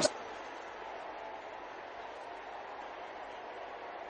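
Steady, faint background hiss with no distinct events.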